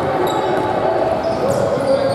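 Basketball game on a hardwood gym floor: a ball being dribbled and sneakers squeaking, with indistinct voices echoing in the large gym.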